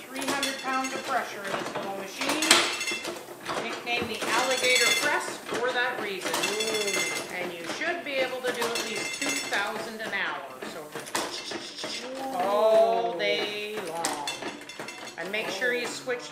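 Foot-treadle platen printing press running, its metal linkage and platen clanking with a ringing clatter about every two seconds as each impression is made. Voices go on underneath.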